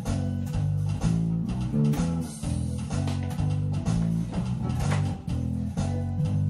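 A guitar playing a low, repeating line of plucked notes over a steady drum beat.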